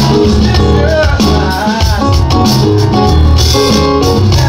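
Live band music: a keyboard and an electronic drum kit playing a steady groove together, with a melody line sliding up and down about a second in.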